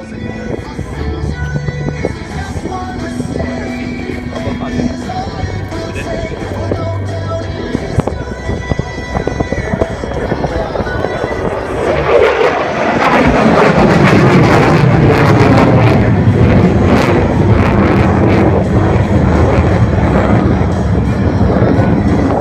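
Music plays over the public address. About twelve seconds in, the jet noise of an F-16 fighter climbing overhead at full power swells loud over it, with a crackling edge, and stays loud.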